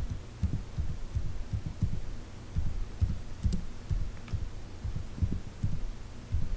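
Computer keyboard keystrokes, heard as dull, low thuds at an irregular typing pace of a few a second, with a faint click now and then.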